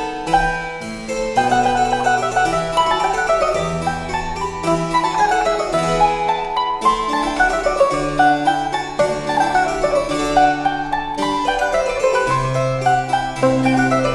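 Baroque music: a mandolin plays a fast melody in running sixteenth notes over a harpsichord continuo bass line.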